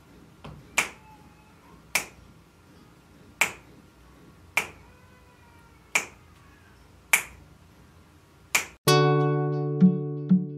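Finger snaps close to a microphone, seven of them at a slow, even pace about one every second and a quarter. Near the end an acoustic guitar comes in with plucked chords.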